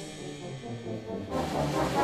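Brass band playing: after the loud playing cuts off, a low brass note is held on its own. About halfway through, a sudden, louder, fuller sound comes in across the whole range.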